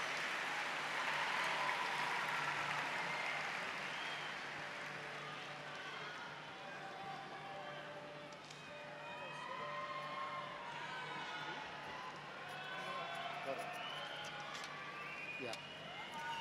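Large concert crowd applauding and cheering after a song, the applause fading over the first several seconds into crowd chatter with scattered shouts.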